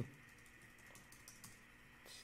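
Faint typing on a computer keyboard: a short run of soft keystrokes.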